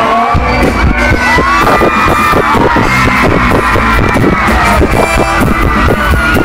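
A live band playing loudly, with a singer's voice gliding over a steady drum beat, recorded on a phone's microphone.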